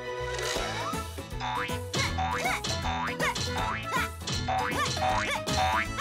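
Cartoon background music with a run of springy boing sound effects on top, each a quick rise and fall in pitch, coming about one to two a second.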